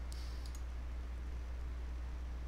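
A steady low hum under a couple of faint computer-mouse clicks in the first half-second.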